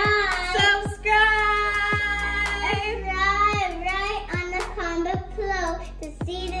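A young girl singing, holding long wavering notes, over background music with a steady beat.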